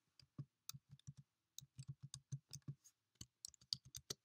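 Near silence broken by faint, irregular small clicks, about six a second.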